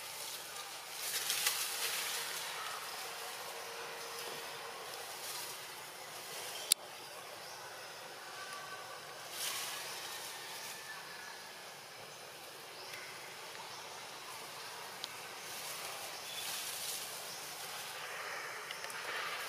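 Outdoor forest ambience: a steady high hiss with several swells of rustling noise, and one sharp click about seven seconds in.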